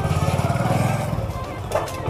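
Motorcycle engine running at low speed as the bike rolls off, a steady, rapid, even low throb.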